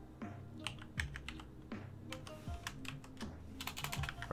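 Typing on a computer keyboard: an uneven run of keystrokes, quickest near the end, over quiet background music.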